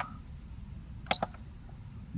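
A single sharp click with a brief high beep about a second in: a keypad button on a Centurion Vantage gate-motor control board being pressed to accept a menu setting.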